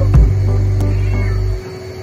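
A domestic cat meowing while being bathed, with a short rising call at the start and fainter calls after it, over background music.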